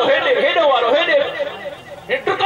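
A man's voice preaching into a microphone, rising and falling in pitch, breaking off briefly near the end.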